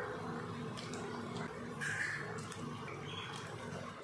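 Thick fish curry simmering in a kadai over a gas burner: a steady low bubbling rumble with a few faint pops.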